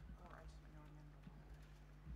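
Near silence: hall room tone with a steady low electrical hum and faint, indistinct voices.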